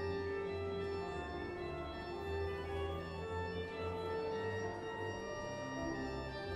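Church music played by pipe organ and brass quartet: slow, held chords that change about once a second.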